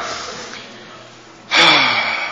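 A voice trails off into the room's echo, then about one and a half seconds in a sudden loud burst of voice breaks out and dies away slowly in a reverberant hall.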